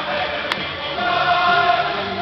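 A group of men singing together in chorus, settling onto a long held note about a second in. A single sharp click sounds about half a second in.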